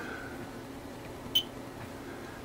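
A single short, high electronic beep about one and a half seconds in, over a faint steady hum.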